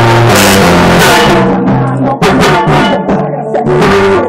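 Latin pop song with singing and a steady drum beat, played loud through a homemade tin-can loudspeaker.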